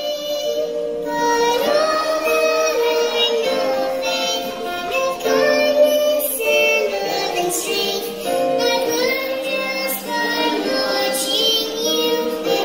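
A group of children and men singing a song together, a held melody with changing notes.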